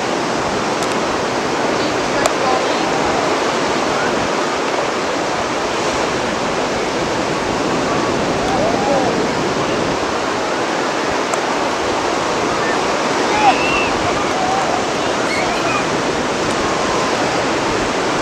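Ocean surf washing onto the beach: a steady, even rush, with faint distant voices over it.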